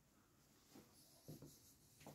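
Near silence: quiet room tone with faint rustling and a couple of soft, low sounds around the middle.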